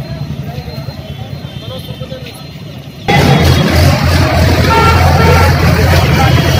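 Street sound at a rally: voices and vehicle traffic. About three seconds in it jumps suddenly to a much louder passage with a deep steady hum under it.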